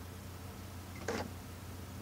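Motorized faders of a Digidesign ProControl control surface moving to new positions after a bank select, a short whir about a second in, over a steady low hum.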